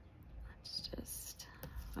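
A woman whispering faintly under her breath.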